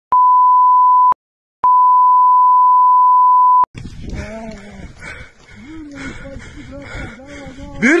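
Censor bleep: a pure 1 kHz tone sounds twice, first for about a second and then for about two seconds, with dead silence before, between and after. It has been dubbed over the soundtrack to blank out swearing.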